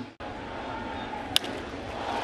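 Steady ballpark crowd noise, then a single sharp crack of a bat hitting a baseball about a second and a half in.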